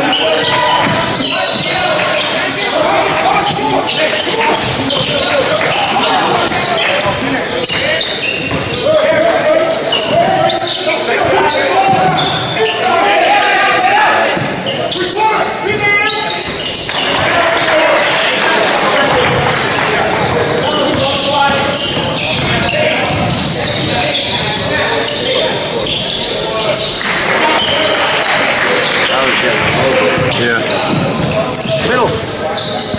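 Indoor basketball game: the ball bouncing on the court amid players' and onlookers' voices, all echoing in a large gym.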